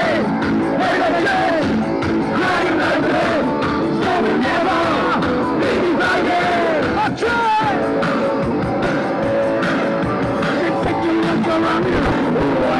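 Live punk rock band playing loudly and continuously, with a wavering melody line over steady held notes, recorded from amid the audience.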